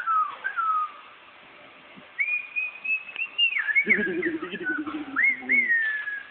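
A person whistling a tune with sliding, wavering notes. A short falling phrase comes first, then a longer phrase from about two seconds in. Near the middle a low voice sounds under the whistle for a second or two.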